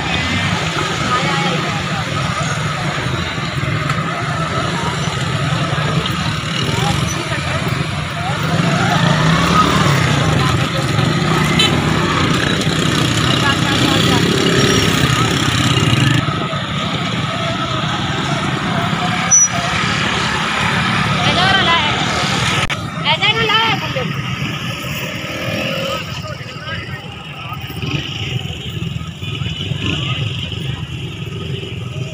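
Motorcycles and cars running past at low speed, a continuous mix of small engines, with people's voices mixed in.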